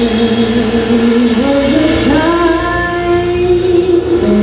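A live band playing with female singing. A melody of long held notes climbs in steps through the second half.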